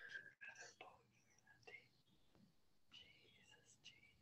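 Near silence, with faint whispering in the first second and again near the end.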